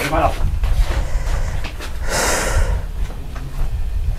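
A single breathy huff, a person exhaling or snorting for well under a second about two seconds in, over a steady low rumble.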